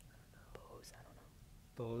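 Faint whispering as team members confer quietly over a bonus answer, then a voice saying "don't know" near the end.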